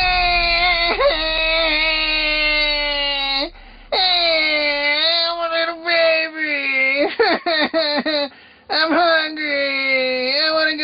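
A grown man imitating a baby crying in a high, strained voice. Two long drawn-out wails, then a run of short choppy sobs, a brief pause, and wailing again near the end.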